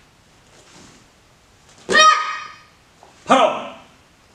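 Two short, loud kihap shouts from a young taekwondo competitor performing poomsae, about a second and a half apart.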